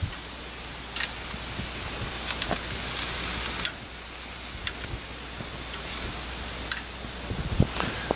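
Pork loin chops sizzling on a hot grill grate, with the short clicks of metal tongs on the chops and grate as they are turned a little for crosshatch marks. The hiss swells for about a second in the middle.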